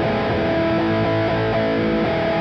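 Distorted electric guitar playing a power-chord voicing with a major seventh in place of the octave, which gives a harmonic-minor or major-seventh colour. The upper notes ring steadily while the lower notes change underneath.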